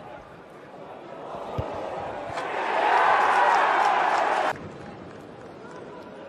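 Football stadium crowd noise that swells into a loud roar for about two seconds, then cuts off abruptly.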